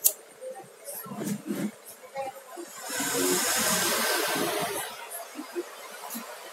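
A handheld gas lighter's flame hissing steadily for about two seconds, heating the corner of an LCD panel to soften the polarizer glue. A few faint clicks come before it.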